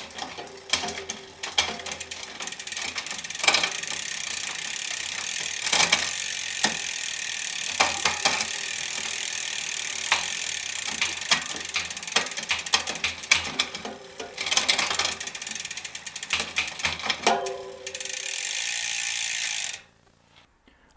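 Mountain bike drivetrain turning in a work stand: the new chain running over a Garbaruk 12-speed cassette and red jockey wheels with a steady rattle, broken by sharp clicks as the rear derailleur shifts across the cogs. It is a shifting test after installation, and the shifting is going pretty well. The sound stops suddenly near the end.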